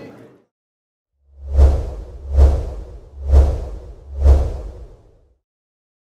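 Four whoosh sound effects about a second apart, each swelling and fading with a deep bass boom underneath, as part of an animated logo sting.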